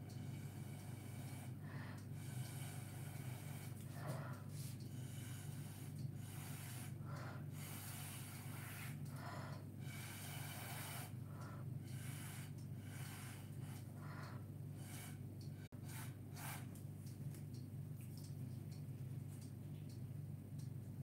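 A person blowing repeated short puffs of air onto wet acrylic paint on a canvas to push the paint around, many separate breaths, each under a second. A steady low hum runs underneath.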